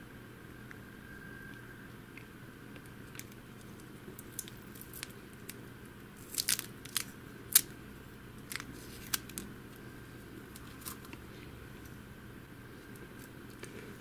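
Adhesive tape being peeled by hand off the metal can of a small DC motor: scattered crackles and ticks, the loudest cluster near the middle, over a faint steady hum.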